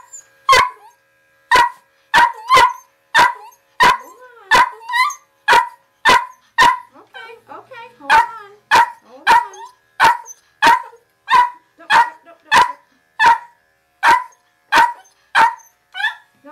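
Miniature poodle barking excitedly at its owner's arrival: a long, steady run of sharp, high barks, a little under two a second, with no let-up.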